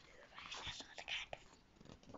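Faint paper rustle and handling as a picture-book page is turned, with soft whispering.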